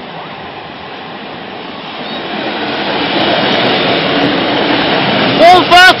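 East Midlands Trains Class 153 diesel railcar approaching and running over the level crossing. Its engine and wheel noise grows steadily louder from about two seconds in as it draws close.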